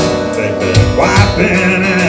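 Instrumental break of a live roots-rock song: harmonica over strummed acoustic guitar and a steady drum-machine beat. About a second in, the harmonica slides up into a high, wavering held note.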